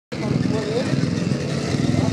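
Racing kart engines of a pack of karts running and revving at a race start, with voices mixed in.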